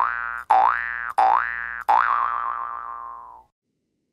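Cartoon 'boing' sound effect repeated four times. Each twang sets off sharply and slides up in pitch, and the last one wobbles and fades away about three and a half seconds in.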